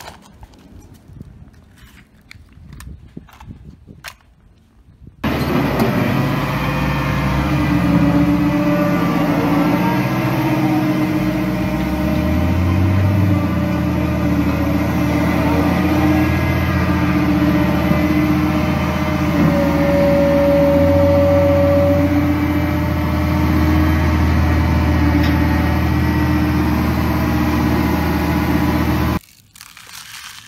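Light clicks and scrapes of a plastic toy excavator on gravel, then about five seconds in the loud, steady diesel engine of a Liebherr 924 Compact crawler excavator cuts in. The engine runs with its note shifting a few times and cuts off suddenly about a second before the end.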